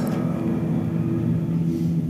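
V12 car engine running at a steady speed, an even low hum with no revving.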